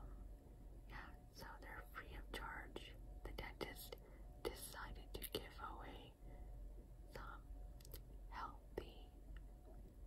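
A woman whispering softly close to the microphone in short breathy phrases, with a few small clicks between them.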